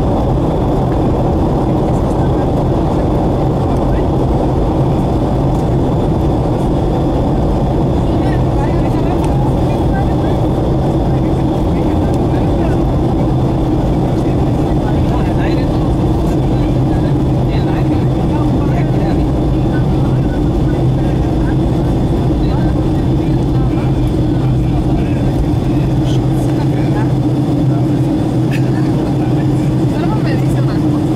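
Steady cabin noise of a Boeing 757-200 in descent, heard from a window seat over the wing: the engines and the air rushing past make an even, unchanging roar, with a faint steady high whine above it.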